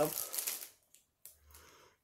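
A woman's voice trailing off, followed by a brief soft rustle that fades within the first second, then a faint low hum near the end.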